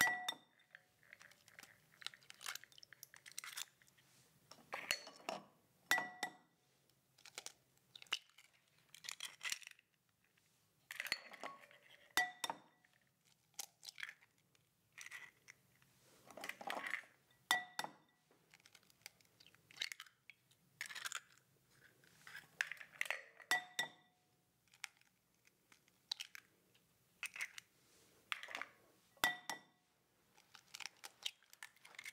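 Eggs cracked one after another on the rim of a glass mixing bowl. Each crack is a sharp tap that makes the glass ring briefly, followed by the crunch and crackle of the shell being pulled apart. The taps come six times, about every six seconds.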